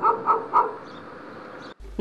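A dog barking in a quick run of short barks, about four a second, stopping within the first second; faint background noise follows.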